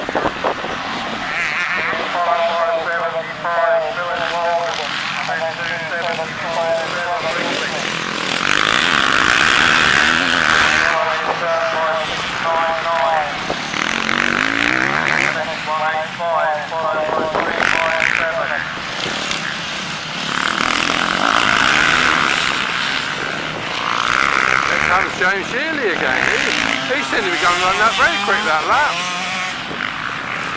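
Motocross bikes racing past in waves, their engines rising and falling as each one passes, under a race commentator's voice over the public-address loudspeakers.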